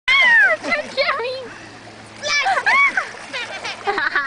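A toddler squealing and laughing in high-pitched bursts, three times, while water splashes around him.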